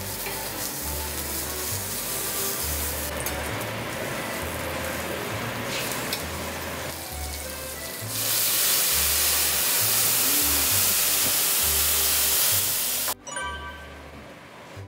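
Black tiger shrimp sizzling on a steel teppanyaki griddle. About eight seconds in, a louder, fuller hiss takes over as a blowtorch flame is played over the shrimp, then cuts off suddenly near the end. Background music with a low, steady beat runs underneath.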